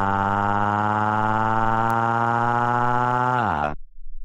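A synthesized cartoon voice wailing one long, steady note, sliding down in pitch and stopping near the end.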